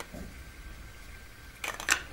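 Sharp plastic clicks and scrapes as the black battery cap is fitted onto a small ABS-plastic camping lantern, a quick cluster of them starting about a second and a half in.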